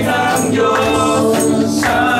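Congregation singing a gospel song, led by a man's voice, with electric guitar accompaniment and a sharp percussion hit about once a second.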